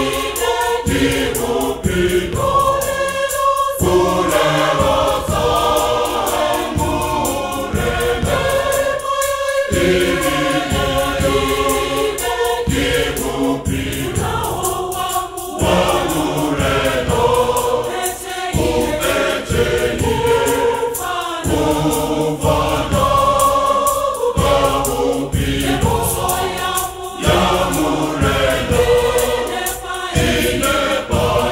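Large choir singing a gospel song in harmony, the voices moving together in phrases.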